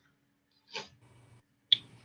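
Near silence broken by a brief soft rustle a little under a second in, then a single sharp click near the end.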